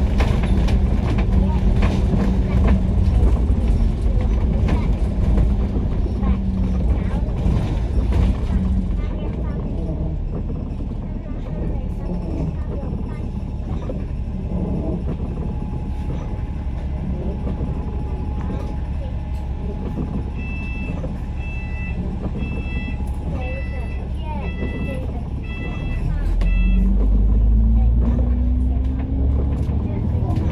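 A double-decker bus (Alexander Dennis Enviro500 MMC) is driven with its diesel engine running, then settles to a quieter idle while it waits at traffic lights. Over a stretch in the second half, about ten high electronic beeps repeat, roughly three every two seconds. Near the end the engine pitch rises and the rumble grows as the bus pulls away.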